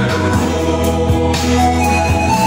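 Male choir singing a hymn in parts, with sustained chords and a strong low bass line, accompanied by strummed acoustic guitars.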